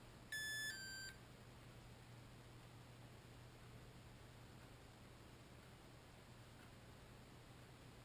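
Two short electronic beeps from the RC radio gear, the second a little lower in pitch, about half a second in; then near silence with a faint low hum.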